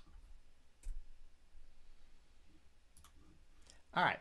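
A few separate, faint computer mouse clicks, spaced out, the loudest about a second in.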